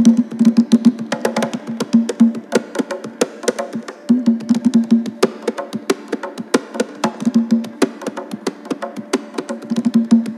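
A rope-tuned Haitian hand drum with a skin head played with bare hands in the Maskawon rhythm: a fast, even stream of strokes, several a second, mixing ringing open tones with sharp slaps.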